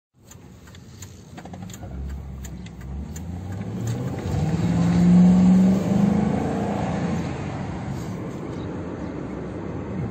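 Engine of an American police car heard from inside the cabin, accelerating: the engine note rises to its loudest about five seconds in, then eases off into a steady cruise.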